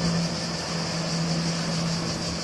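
Sailing yacht's inboard engine running hard with a steady low drone, over churning water and a steady high hiss.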